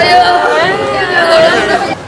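A woman wailing in grief, her voice long and wavering, over the chatter of a crowd around her.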